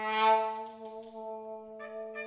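Improvised ensemble music: a brass instrument sounds one long note at a steady pitch, bright at its attack and then held. A second, brighter held tone comes in near the end.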